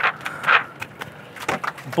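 Wet cast net dropped onto a fiberglass boat deck: two short watery rushes, then a few sharp knocks from its lead weights hitting the deck.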